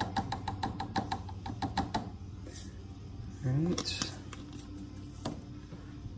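Rapid light ticking, about eight a second for two seconds, as a few granules of yeast nutrient are shaken or tapped into a glass Erlenmeyer flask of yeast starter. A short rising hum of a man's voice follows, the loudest sound here, then a single click.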